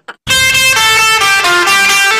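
Short electronic outro jingle: a bright run of notes stepping down in pitch, starting about a quarter second in, then settling into one held note near the end.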